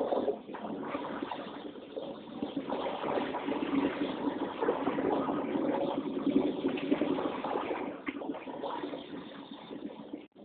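Truck engine and road noise heard from inside the cab as it rolls slowly in traffic: a steady, uneven rumble with no sharp events.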